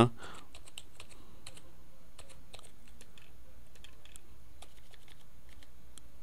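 Computer keyboard typing: a few faint, irregularly spaced key clicks over a steady low background hum.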